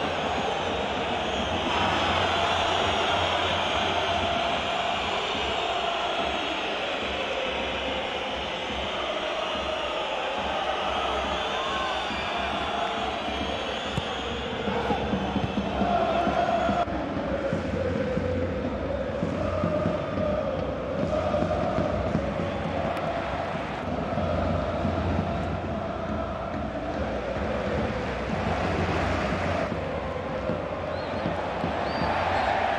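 Football stadium crowd noise with chanting, steady throughout, changing abruptly about two seconds in and again about halfway through.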